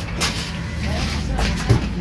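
A steady low mechanical hum with a few sharp clicks and faint background voices.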